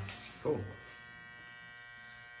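Corded electric hair clippers running with a steady buzz, held against the side of the head to taper the hair.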